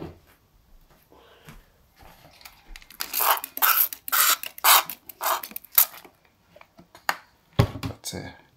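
Hand spray bottle misting water into a snail tank: about six quick hissing squirts, roughly two a second, after some quiet handling noise. A short thump comes near the end.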